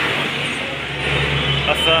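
A motor vehicle engine running with a steady low hum beside the road, with a voice starting near the end.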